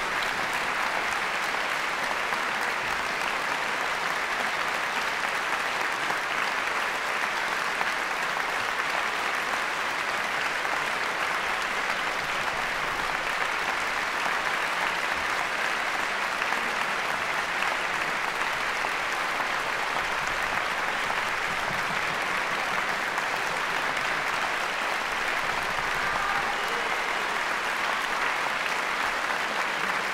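Concert hall audience applauding: steady, sustained clapping with no let-up.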